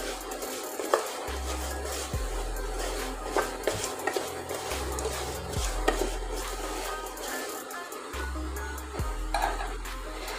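Background music with a steady bass line, over a wooden spatula scraping and stirring crumbly moong dal in a non-stick pot, with scattered small scrapes and knocks.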